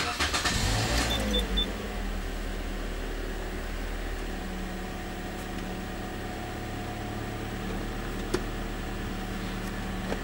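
A Toyota Corolla's four-cylinder engine starting, with three short high beeps about a second in, then settling into a steady idle.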